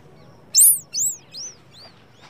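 A run of four high, bird-like chirps about half a second apart, each arching up and down in pitch, every chirp lower and quieter than the one before.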